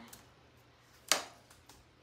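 Quiet room tone with one sharp, short click about a second in.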